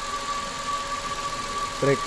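Mitsubishi Mirage G4's three-cylinder engine idling steadily, with a constant high whine over it. It runs smooth now that the loose number 3 injector connector has been taped and reseated, the fix for its cylinder 3 misfire.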